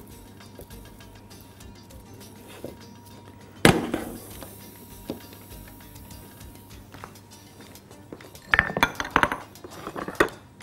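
Kitchenware clinking: one sharp clink a little under four seconds in, a lighter one a second later, then a quick run of clinks and knocks near the end. Faint background music runs under it.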